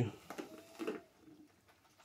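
A bird's brief, faint call, a short steady note under a second in, with a few light clicks around it.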